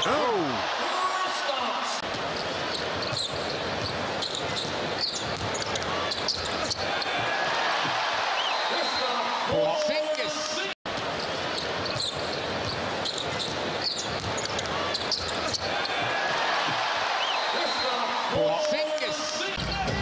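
A basketball being dribbled on a hardwood arena court, its bounces sounding over steady arena crowd noise. A short steady tone comes twice, about nine and a half seconds in and near the end, and the sound drops out for an instant about eleven seconds in.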